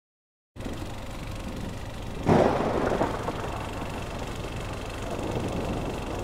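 A low, steady rumble of storm ambience, broken about two seconds in by a sudden loud thunderclap that dies away over about a second: a thunder sound effect.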